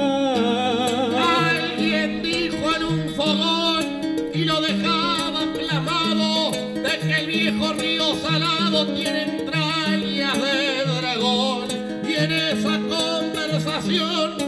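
Two acoustic guitars playing an instrumental interlude between sung verses, a steady stepping bass line on the low strings under plucked chords.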